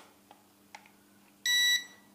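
A single short, high electronic beep from the S160 toy drone's remote control, about a third of a second long, a little after the middle. It confirms the gyro calibration made by pushing both sticks down and outward. Two faint clicks come before it.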